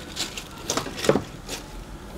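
A plastic bag of empty plastic watercolour half pans rustling and clicking as it is handled and set down, a few short crinkles and clicks.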